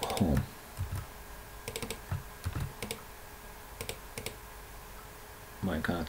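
Computer keyboard typing: a few short clusters of keystrokes separated by pauses.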